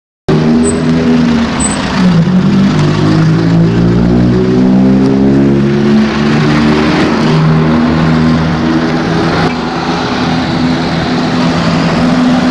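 A motor vehicle's engine running steadily amid road noise, its pitch dipping briefly about two seconds in and then holding fairly level.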